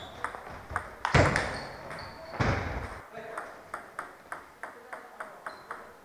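Table tennis ball clicking off bats and table in a fast rally, several hits a second, with two loud bursts about one and two and a half seconds in. Lighter, evenly spaced ball clicks follow.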